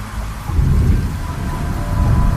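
Steady rain with a low rumble of thunder rolling in about half a second in, loud and sustained.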